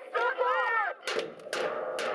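A voice speaking briefly, then about a second in, sharp drum strikes over a steady held note as drum-led music starts.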